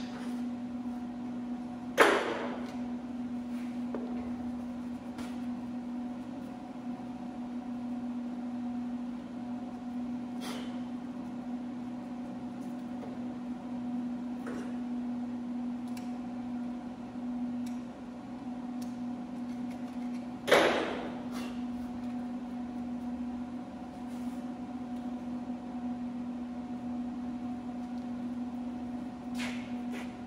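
Steady electrical hum in a workshop, with scattered light metallic clicks and two louder clanks, about two seconds in and about twenty seconds in, as metal parts and tools are handled on a steel welding table. No welding arc is heard.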